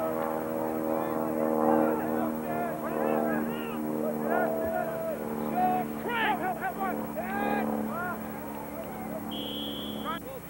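Voices of lacrosse players and spectators shouting and calling across the field, over a steady low droning hum. A short, high referee's whistle blast sounds near the end.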